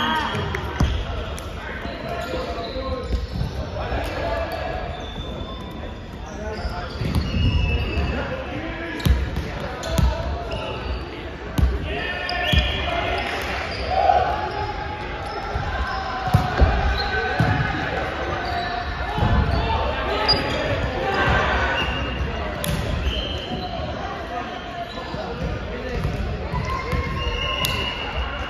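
A volleyball being struck and bouncing on a hardwood court in a large, echoing sports hall: a scatter of sharp ball impacts amid players calling out.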